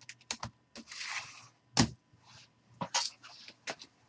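Irregular sharp clicks and clacks, the loudest a little under two seconds in, with a short scraping rustle about a second in: stacks of hard plastic card holders handled and set on the table, and clicking at a computer keyboard and mouse.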